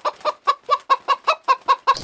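A chicken clucking in a quick, even run of short clucks, about six a second, stopping just before the end.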